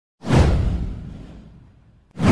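A whoosh sound effect with a deep low boom under it. It starts suddenly a fraction of a second in, sweeps downward in pitch and fades away over about a second and a half.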